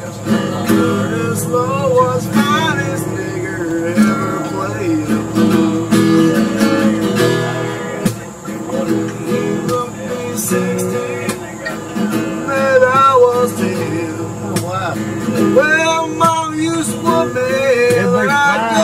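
Acoustic guitar strummed and picked, playing a blues accompaniment with frequent sharp strums throughout.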